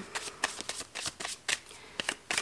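Tarot cards being shuffled by hand: a run of crisp, irregular card snaps, a few each second.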